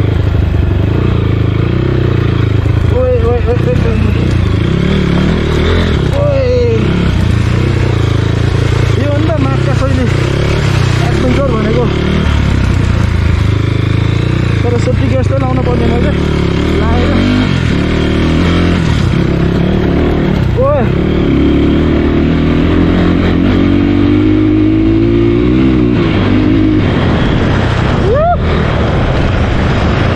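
Dirt bike engine running as it is ridden over a rocky track, with a person's voice heard over it.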